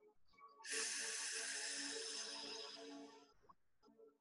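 A person's long, deep breath out close to the microphone, lasting nearly three seconds and slowly fading, over soft background music.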